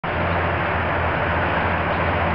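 Small Peugeot Vivacity scooter engine running steadily at idle, a constant low hum under an even hiss.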